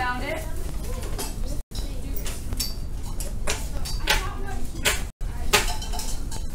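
Children's chatter filling a classroom, with frequent light clinks and clicks of small hard objects being handled.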